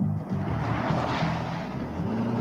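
Chevrolet Corvette's V8 driving past close by, engine and road noise swelling about a second in, with music underneath.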